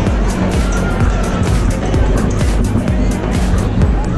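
Music with a steady low bass and many short percussive strokes, with voices mixed in.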